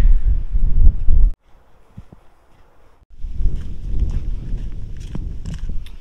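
Wind buffeting the microphone, cut off abruptly just over a second in. After a short quiet gap it returns about three seconds in, with a few faint footsteps on a dirt trail under the wind.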